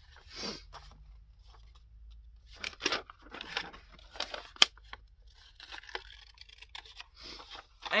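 Scissors snipping paper while the corners of a paper envelope are rounded off: several short cutting strokes with a sharp click about halfway through.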